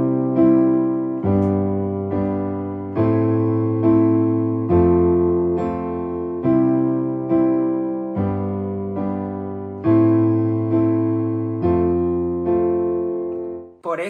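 Digital keyboard with a piano sound playing a slow chord progression: sustained chords over bass notes, a new chord about every second and a half, each decaying before the next. The chords are voiced in inversions, so a common top note keeps sounding and only one finger moves between chords, giving smooth changes.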